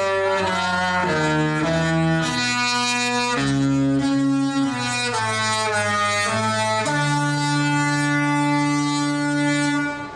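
The Disney Fantasy's musical ship horn playing a tune: pretty loud held chords that step from note to note. It ends on a long final note that stops just before the end.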